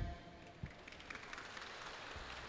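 Faint, scattered audience applause that starts about a second in and builds slightly, with a single low thump of the handheld microphone just before it.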